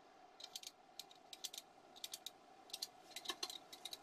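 Snap-off utility knife blade scoring baguette dough: clusters of quick, crisp scratchy clicks as the blade slices through the floured skin of the loaf, repeated several times across the few seconds.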